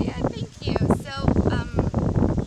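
Women talking in conversation, with wind rumbling on the microphone underneath.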